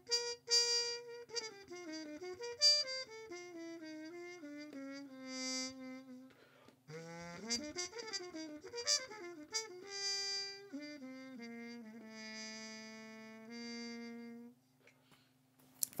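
Trumpet played through a harmon mute with its stem hole plugged by a rubber test tube stopper, working as a practice mute: a quiet, muffled melodic line in two phrases with a short break about halfway, ending on a held note that stops about a second and a half before the end.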